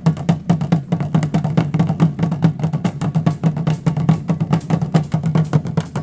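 Drums beaten in a fast, steady marching rhythm, dense strikes over a deep, booming drum tone, playing the beat for a school parade march.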